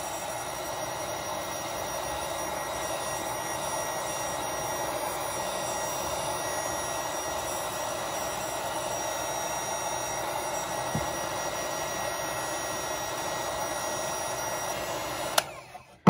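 Heat gun running on its low setting with a steady whir, blowing hot air to shrink heat-shrink tubing over a crimped battery cable lug. It switches off near the end.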